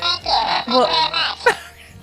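A man talking in a put-on comic character voice, garbled and hard to make out.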